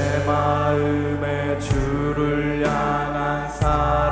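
Worship team vocalists singing a Korean worship song together, sung lyrics, over a live band's bass and keyboard chords. The notes are held long, with the chords changing every second or two.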